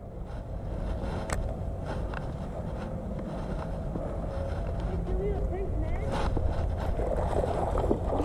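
Wind buffeting the microphone, a steady low rumble that grows slowly louder, with a single sharp click about a second in.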